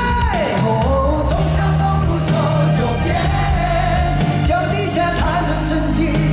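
Live band playing a pop-rock ballad with male singing over it: a sung note slides down just after the start, then notes are held over a steady bass line.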